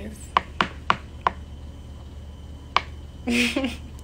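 A run of sharp clicks, four in quick succession in the first second and a bit, then one more about three seconds in, followed by a short bit of a woman's voice near the end.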